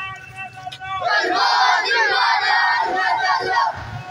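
A marching crowd of men and boys shouting a chant together, the many voices loudest from about a second in until just before the end.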